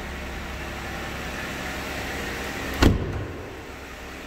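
2016 Jeep Wrangler Unlimited Rubicon's 3.6-liter Pentastar V6 idling, a steady low hum, with a single loud thud about three seconds in as a car door is shut.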